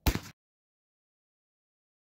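A single 12-gauge shotgun shot of 00 buckshot fired into a ballistic gel block. The sharp blast comes right at the start and cuts off abruptly after about a third of a second.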